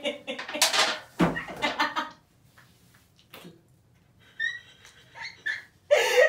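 Laughter, with one sharp smack about a second in as a cream pie in a foil tin is pressed into a face; after a brief hush, a few short, high squeaks near the end.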